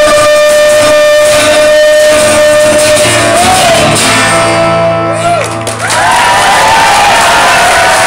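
Live acoustic guitar and a long held sung note closing a song, then a final guitar chord ringing out. From about six seconds in, the audience cheers and whoops.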